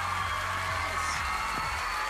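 A studio audience screaming and cheering, with band music playing low underneath that fades out partway through.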